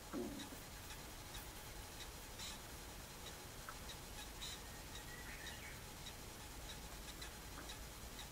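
Faint short squirts of a hand-held trigger spray bottle misting water over dough balls: a few brief hisses a couple of seconds apart over quiet room tone.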